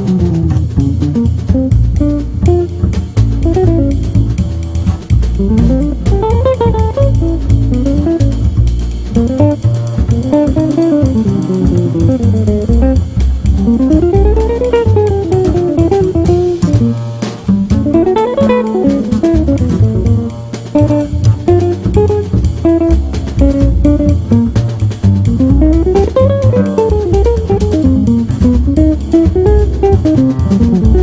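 Jazz trio of guitar, bass and drum kit playing: the guitar runs phrases up and down in arching lines over a walking low bass and steady cymbal work.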